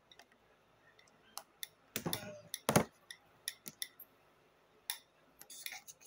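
Small pink plastic compact case handled as an ASMR trigger: scattered sharp plastic clicks and taps, the loudest a little under three seconds in.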